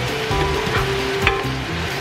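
Shrimp sizzling in garlic butter in a frying pan as they are stirred with a spoon, over background music.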